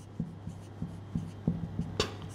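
Marker pen writing on a whiteboard: a string of about ten short taps and strokes as letters are drawn, over a faint steady low hum.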